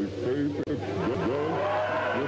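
Several voices at once, laughing and crying out, over a steady low hum, with a brief dropout in the sound about two-thirds of a second in.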